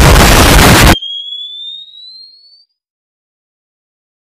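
Loud explosion sound effect that cuts off abruptly about a second in. It is followed by a thin, high-pitched tone that rises slowly in pitch and fades out.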